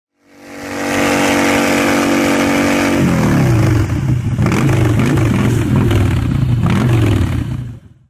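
Engine sound effect: a steady drone fades in, then about three seconds in the pitch drops and the engine revs up and down several times before fading out just before the end.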